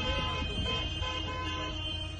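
Car horns honking in long held notes over street traffic noise and a low rumble, easing off slightly toward the end.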